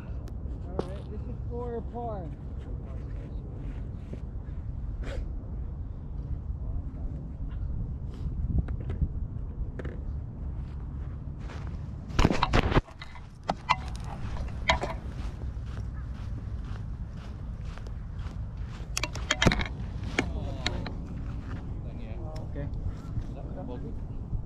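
Steady low rumble of wind on the microphone, with faint, distant voices that cannot be made out and scattered short knocks and clicks. A louder cluster of knocks comes about halfway through, after which the sound dips suddenly for a moment.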